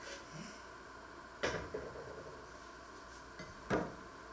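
Two short knocks of wood and cookware, one about a second and a half in and a second near the end, as a wooden chopping board and a pot lid are handled on the stove and counter.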